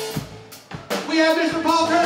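Live rock band playing drum kit, electric guitar and bass guitar. The music thins out briefly about half a second in, then drum strokes bring the full band back in with held notes.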